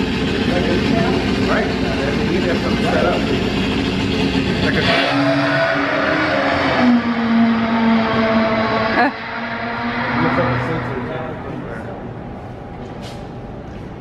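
Recorded drag-race engine sound played back at an exhibit, a steady loud noise that cuts off about five seconds in. After it come quieter held tones that drop away about nine seconds in and fade.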